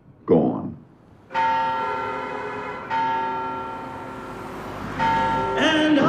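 Church bell tolling three slow strokes, each ringing on and fading away before the next. A voice begins singing near the end.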